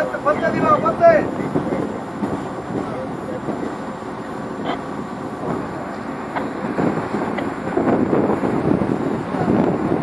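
Heavy crane's diesel engine running steadily under load during a lift, with men's voices over it in the first second and again near the end.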